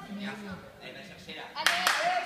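Indistinct voices in a large echoing gymnastics hall, and near the end two sharp smacks about a fifth of a second apart.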